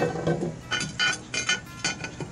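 A steel lid lifter and a cast-iron Dutch oven lid knocking together: about four light metallic clinks, each with a short ring.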